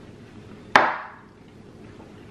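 A knife cutting through a large chocolate peanut butter cup knocks once against the plate, a sharp clack about a second in that rings briefly as it dies away.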